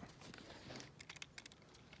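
Faint, quick clicking of a fishing reel being cranked to draw a freshly cast rig in closer to shore.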